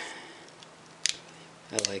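A single short, sharp click of thin plastic transparency film being handled, about a second in, against quiet room hiss.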